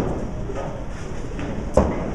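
Bowling alley din: a steady rumble of rolling balls and lane machinery, with a sharp clack at the start and a louder one just before the end.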